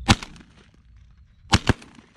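Shotgun blasts fired at flying pigeons: one loud report at the start, then two more in quick succession about a second and a half in.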